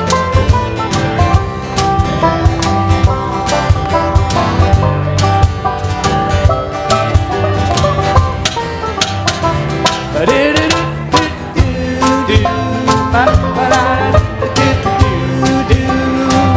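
Live acoustic string band playing an instrumental break between verses, with plucked upright bass, picked strings and a steady percussive beat.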